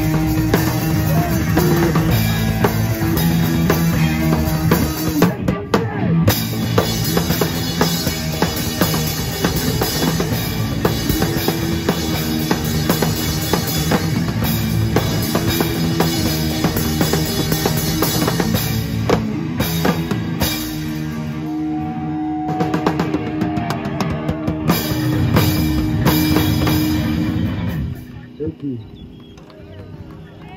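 Live rock band playing loud: drum kit, electric guitars through an amp and bass, with held notes and steady drum hits. The song stops abruptly about two seconds before the end, leaving a few voices.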